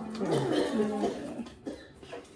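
A woman's short wordless vocal sound, pitched and sliding before settling on one note, in the first second; a faint click follows near the end.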